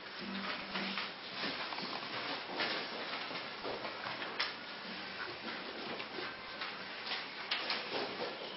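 Irregular light knocks, clicks and rustling as a classical guitar is set in position and a chair taken, with an audience shifting in their seats; no playing yet.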